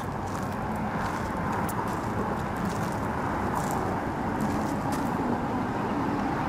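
Steady road-traffic noise from freeway traffic, an even rushing hum with no single vehicle standing out.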